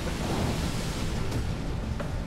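Heavy seas and wind: a steady rush of waves and spray over a deep rumble.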